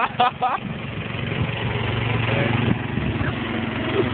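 Riding lawn mower engine running steadily as the mower drives past close by, its hum growing louder about halfway through.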